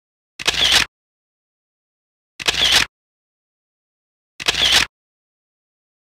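A camera shutter sound, three times about two seconds apart, each click alike, with dead silence between.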